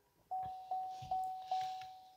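Car dashboard warning chime of a 2017 Chevrolet Camaro, four single-pitched dings about two and a half a second, each fading before the next.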